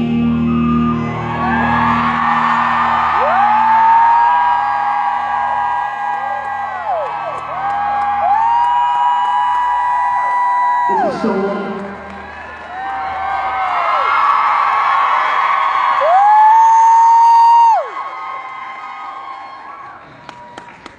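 Live rock band music with long held high notes over a low pulsing beat, and the audience cheering and whooping. The beat drops out about halfway through, leaving the held notes over crowd noise, and the music fades near the end.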